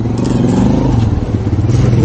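A motor vehicle engine running close by: a steady low hum that comes up at the start and holds.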